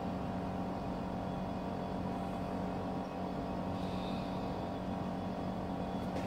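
Steady mechanical hum: a low drone with several unchanging tones over a faint even hiss.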